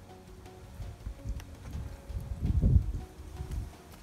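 Soft background music under low, irregular thuds and handling noise from hands working inside a plucked rooster's carcass on a folding table, loudest a little past the middle.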